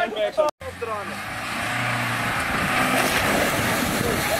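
Jeep Wrangler's engine running hard as it churns through a mud bog, tyres spinning and flinging mud. The noise builds over the first couple of seconds and the engine note climbs as it revs up.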